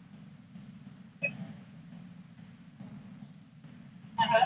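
Quiet, steady low hum on an online video call's audio line, with one brief short sound about a second in.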